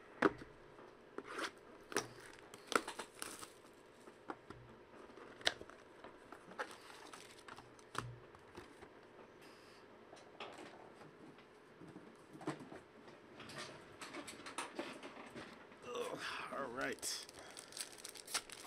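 Trading cards being handled and set down, giving scattered light clicks and taps. Near the end a foil card pack is torn open and its wrapper crinkles.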